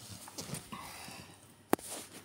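Soft rustling handling noise, then one sharp click near the end.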